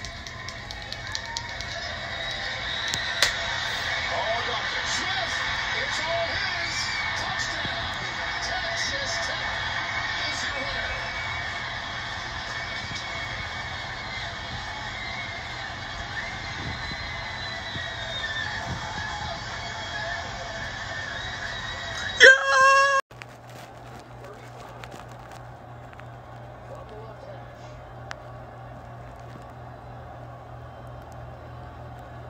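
College football TV broadcast played through a television speaker: stadium crowd noise and music, with commentary under it. About 22 seconds in there is a brief loud pitched blare, then the sound cuts off abruptly to a quieter crowd background.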